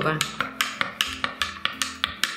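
A metal spoon clinking rapidly against a drinking glass, about six light clinks a second, as it stirs fresh baker's yeast into lukewarm water to dissolve it.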